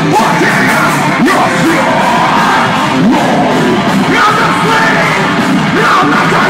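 Metalcore band playing live at full volume: distorted electric guitars and fast, hard-hit drums under a screamed lead vocal.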